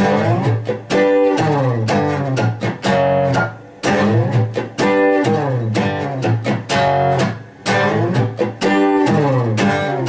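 Steel-string acoustic guitar playing a 12-bar blues rhythm in G. Chords are struck in short choppy phrases, with a brief break about every second.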